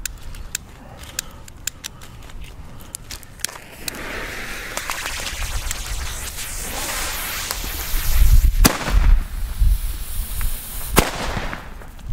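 WECO cube-shaped bangers (Kubische Kanonenschläge) going off: faint scattered cracks early on, a rising hiss, then two sharp bangs about two seconds apart in the second half.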